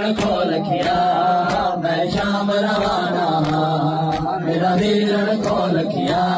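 Men's voices chanting a noha, a Shia lament, in a long drawn-out line. Under it runs rhythmic matam: hands striking chests together about one and a half times a second.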